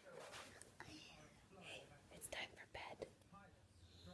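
Faint whispering and soft breathy voice sounds, broken up, with a few light clicks.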